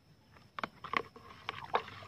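A stick stirring a pesticide spray mix in a plastic bucket of water, knocking and scraping against the bucket in a quick, irregular run of clicks from about half a second in.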